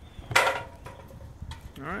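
A single short, sharp clatter about a third of a second in, from something being handled. A man's voice begins just before the end.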